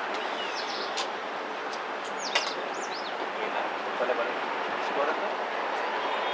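Birds chirping in short, high, quickly gliding calls over a steady outdoor hiss, with faint distant voices around the middle.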